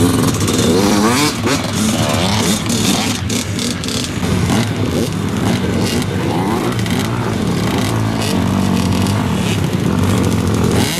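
Several small two-stroke junior motocross bikes running together, their engines idling and revving up and down in overlapping pitches.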